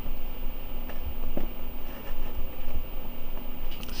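Faint click of a multimeter test lead's banana plug being pushed into a binding-post jack, about a second and a half in. Under it runs a steady low hum with uneven low rumble.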